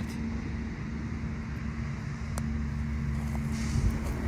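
A motor running steadily: a low rumble with a constant hum.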